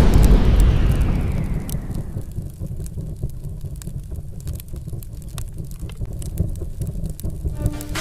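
Cinematic logo-reveal sound effect: the tail of a boom fades over the first couple of seconds into a steady low rumble with scattered faint crackles. A melodic music track begins near the end.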